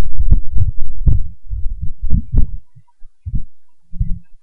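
Irregular low thumps and rumble in quick succession for about two and a half seconds, then one short thump near the end.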